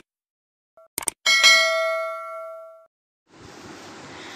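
Subscribe-button sound effect: two quick mouse clicks, then a bell ding that rings and fades away over about a second and a half. A faint steady hiss comes in near the end.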